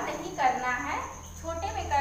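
A woman speaking, over a steady high-pitched whine and a low hum.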